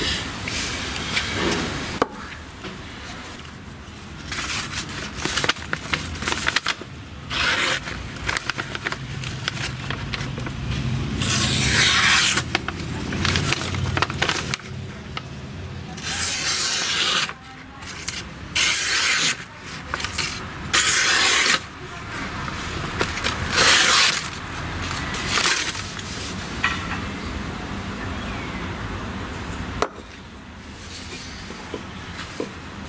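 Cold Steel SR1 Lite folding knife shaving thin curls off a wooden stick in a series of separate scraping strokes, each about half a second to a second long. Around the middle, the blade slices through a sheet of paper.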